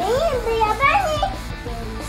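High-pitched children's voices calling out and chattering in two short bursts, over faint background music.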